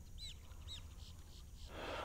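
A bird calling twice, two short high chirps that rise and fall, about half a second apart, faint over a low steady background.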